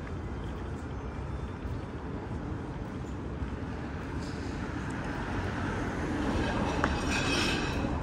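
Steady low rumble of city street traffic, with a passing vehicle growing louder from about five seconds in and easing off near the end.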